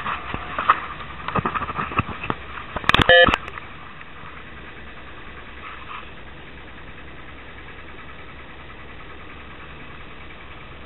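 Steady low running of a yacht's engine with water washing along the hull. Over the first three seconds there are knocks and rustles of the camera being handled, ending in a loud brief burst about three seconds in.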